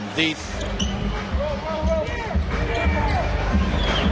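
Basketball dribbled on a hardwood court during live play, heard over the arena's background noise.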